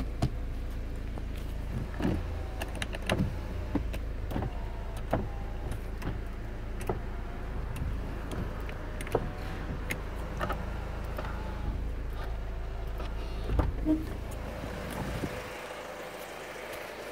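A Kia Sportage idling, heard from inside the cabin as a steady low hum, with scattered clicks and knocks from controls and handling. A few louder knocks come near the end, and then the hum drops away.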